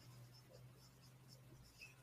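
Near silence: faint strokes of a marker writing on a whiteboard over a low steady hum.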